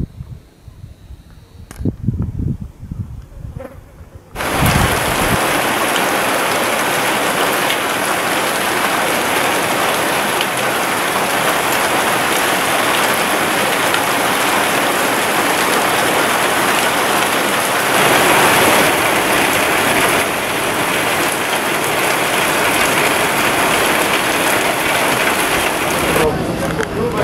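Steady, heavy rain falling, starting abruptly about four seconds in; before it, a few low rumbles and bumps.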